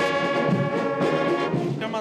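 Marching band brass section with sousaphones and baritone horns playing one long sustained chord that dies away just before the end.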